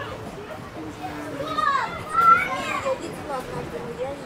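Background voices with high-pitched children's shouts and calls, loudest a little past the middle.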